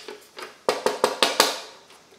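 A licence plate loose in its frame, shaken by hand, clacking and rattling about five times in quick succession a little past half a second in. This is the plate-in-frame rattle that the subwoofer's bass sets off.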